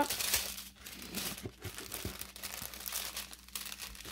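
Small plastic bags of diamond painting drills crinkling as they are gathered and stacked by hand. The rustle is loudest in the first second, then comes in short, irregular bursts.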